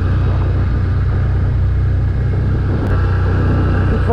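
Can-Am Outlander Max 1000 XTP quad riding at a steady speed: a steady low drone from its V-twin engine, mixed with rumble from the tyres on block paving.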